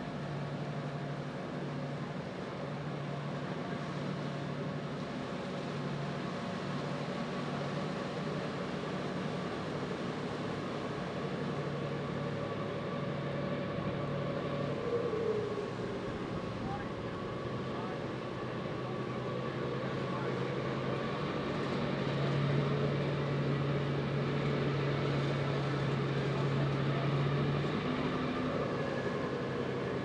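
Steady low drone of a large fishing boat's engines as it motors in through the inlet, with a constant outdoor background hiss; the hum swells a little louder about three-quarters of the way through.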